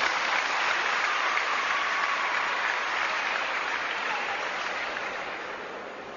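Spectators in a large hall applauding a finished rally. The clapping is loud at first and dies away over the last couple of seconds.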